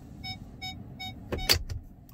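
In-cab reverse warning beeps, the short repeated chime sounded while the truck is in reverse with the backup camera showing, at about three beeps a second. The beeping stops a little over a second in, followed by a couple of sharp clicks.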